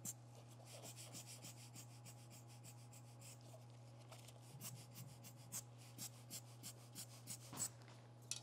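Near silence over a steady low hum, with faint short puffs and taps, a couple a second and more often toward the end, from a rubber bulb lens blower being squeezed and a fine brush working wet alcohol ink on linen.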